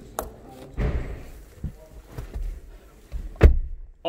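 Rustling and handling noise as someone climbs into a car through its open door, with a click just after the start and a single sharp knock about three and a half seconds in.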